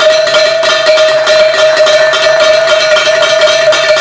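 Stock exchange closing bell ringing continuously, struck rapidly on one steady pitch, signalling the close of trading.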